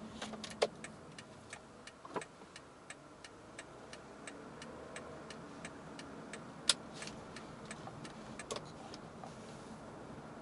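Car's turn signal clicking steadily, about three clicks a second, over low road and engine noise inside the cabin. A few louder knocks break in, the loudest a little before seven seconds in.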